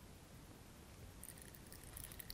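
Near-silent room tone; in the second half, faint light clicks and crackles from hands handling a small object.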